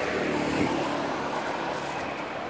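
A road vehicle passing on the street, its engine noise swelling to a peak about half a second in and then easing, over steady traffic noise.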